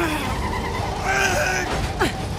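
Film sound mix of vehicles driving fast: engine rumble and road noise, with brief squeals in the middle.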